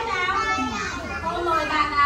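Several young children talking and calling out at once, their high voices overlapping.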